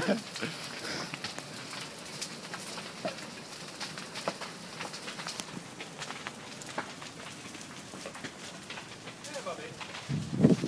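Irregular sharp crackles and snaps over a faint hiss, from a brush fire burning on a hillside.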